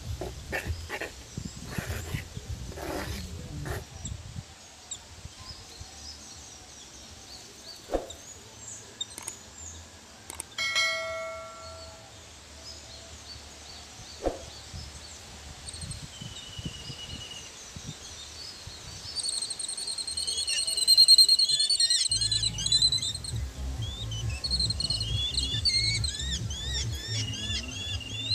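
Birds chirping and calling, busiest in the last third. A spoon scrapes and knocks in a clay bowl in the first few seconds, and a short ringing chime sounds about ten seconds in.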